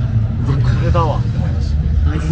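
A short voiced sound from a man, about a second in, over a steady low rumble of outdoor background noise.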